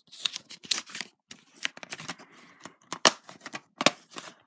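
Plastic DVD case being handled: a run of small clicks and scrapes, with two sharper clicks near the end.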